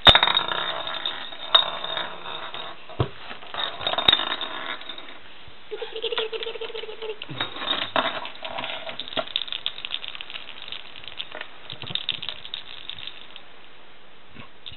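A small plastic lattice toy ball rattling and clicking as it is shaken, rolled and pecked at, in a quick irregular run of little ticks and clatters, loudest at the very start. A short steady tone sounds for about a second and a half near the middle.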